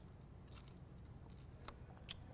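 Near silence: a low steady hum with a few faint, sharp clicks.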